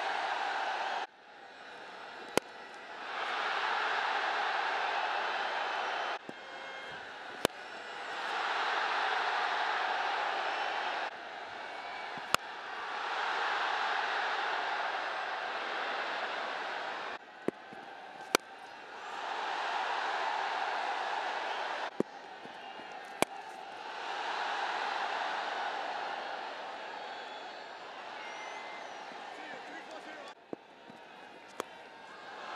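Cricket bat striking the ball about six times, each sharp crack followed about a second later by stadium crowd cheering that swells, holds for a few seconds and cuts off suddenly.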